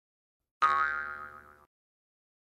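Intro sound effect for the channel logo: a single sudden pitched tone, rich in overtones, that starts about half a second in, dies away over about a second and then cuts off.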